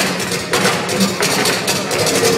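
A live band playing through a PA in a large hall, with regular sharp percussion strikes over sustained pitched notes.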